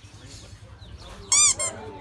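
A short high-pitched squeak, rising then falling, about one and a half seconds in, followed at once by a second, fainter squeak.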